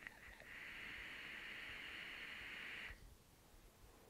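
Faint, steady hiss of a long draw, about two and a half seconds, on an Aspire Atlantis sub-ohm tank fitted to a Sigelei 30W variable-wattage mod, as air is pulled through the tank over the firing coil; it stops abruptly.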